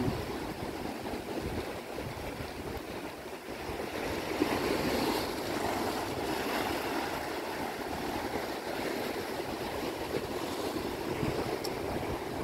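Sea surf washing in and small waves breaking in the shallows, a steady rushing noise that swells louder about four seconds in.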